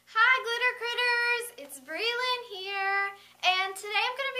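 A woman's high-pitched, sing-song voice in three drawn-out phrases with short breaks between them.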